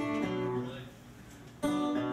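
Acoustic guitar played by hand: notes ringing and fading away, then a fresh strummed chord about a second and a half in that rings out.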